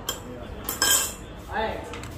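Ceramic bowls and spoons clinking and clattering on a wooden dinner table, with one louder clatter a little under a second in.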